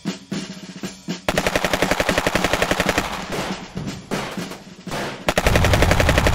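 A rapid rattling roll starts about a second in, then a heavier, louder burst of automatic rifle fire sets in near the end. It is a cartoon sound effect of an AK-style rifle firing on full auto.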